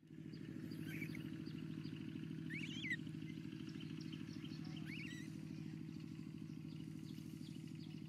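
An engine running steadily with a fine, even pulse, and a few bird chirps over it.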